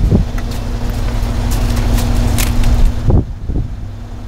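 A car engine idling as a steady low hum, with wind noise on the microphone for the first three seconds. A few clicks and low knocks come as the rear door of the 2014 Mercedes-Benz CLS 550 is handled, the last of them about three seconds in.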